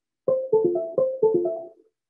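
A tablet's start-up chime: a short electronic jingle, a three-note falling figure played twice. It signals that the tablet is up and ready.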